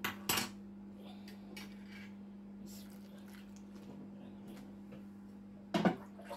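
Kitchen clatter as a plastic mixing bowl and glass measuring jug are handled on the countertop: two sharp knocks at the start, a few faint ticks, and a louder knock near the end, over a steady low hum.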